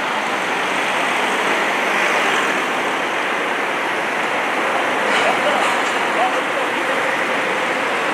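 Steady road traffic noise, an even wash of passing vehicles with no single engine standing out.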